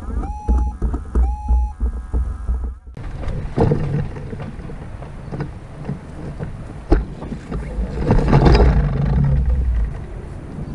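Wind buffeting an action camera's microphone mounted on a hang glider, a low rumble that swells louder about eight seconds in. Scattered knocks from the glider's frame are heard, one sharp one about seven seconds in.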